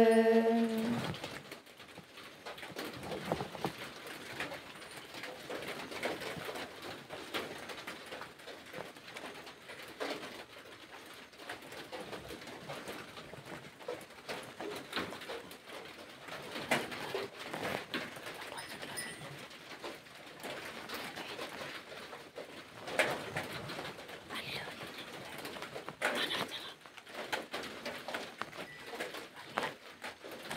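A held sung note ends about a second in. Faint bird calls with a cooing sound follow, along with scattered small noises.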